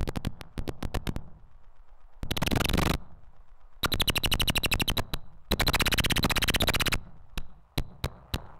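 Harsh noise from a homemade electronic synthesizer: rapid trains of sharp clicks that start and stop abruptly, alternating loud dense blocks with quieter gaps, with a thin high tone running through the loud blocks.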